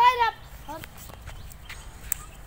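A goat bleating: one wavering, high-pitched call that ends about a third of a second in, followed by a few faint short sounds.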